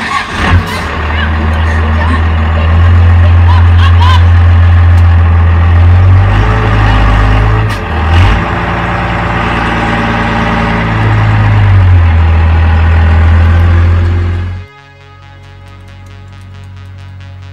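Dodge Ram dually pickup's engine running loud and close, its pitch and level rising and falling as it revs, cutting off suddenly near the end.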